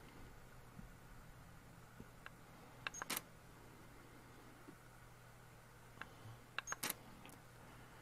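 Camera shutter firing twice, about four seconds apart, each exposure a short double click, taking successive frames of a macro focus stack. A faint steady hum lies under it.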